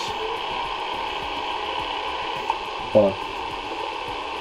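Steady hiss and hum with faint voices underneath: the worn soundtrack of an old VHS home video playing back. A man's voice breaks in briefly about three seconds in.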